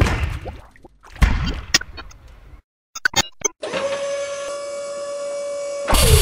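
Glitchy intro sound effects for an animated logo: two heavy hits with falling tails in the first two seconds, a few sharp glitch clicks around the middle, then a steady electronic tone held for about two seconds that ends in a loud hit.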